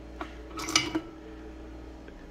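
Rocks clinking against each other and the glass vase as a hand rummages through them and lifts one out: a small tick, then a brief clatter about half a second to a second in.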